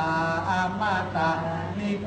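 A voice chanting in Thai in long, held, melodic phrases over a steady low hum.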